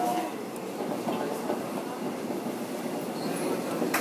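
Steady rolling rumble of a Seoul Metro 4000-series subway train heard from inside the car as it runs through a tunnel, with one sharp click near the end.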